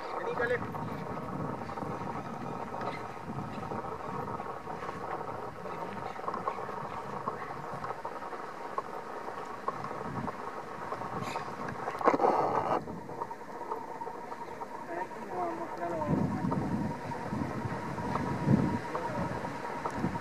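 Quiet outdoor background: faint voices over a steady low hum, with wind rumbling on the microphone in the last few seconds.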